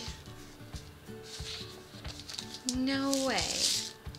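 Soft rustling and light clicks of a small plastic wrapper being handled and pulled open, over quiet background music. About three seconds in, a short voiced exclamation falls in pitch.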